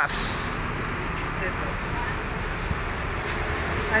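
Steady road traffic noise from a busy city street: a continuous, even rumble and hiss.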